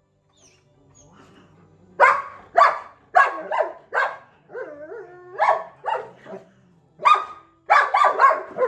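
German Shepherd puppy barking at a cat in quick runs of sharp barks. The barking starts about two seconds in, pauses briefly, then picks up again near the end.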